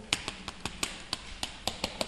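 Chalk writing on a chalkboard: a quick run of light, sharp taps, about five a second, as each stroke lands on the board.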